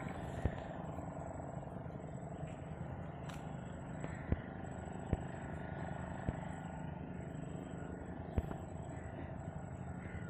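Steady low engine hum, with a handful of short, sharp clicks spread through it.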